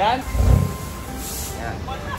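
BMW diesel engine heard through a straight-piped exhaust with the middle resonator removed: a short loud low burst about half a second in, then running steadily with a low rumble.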